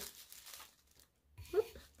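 Faint rustle of paper sheets being handled and set down on a table, followed by a brief, quiet vocal hesitation sound about one and a half seconds in.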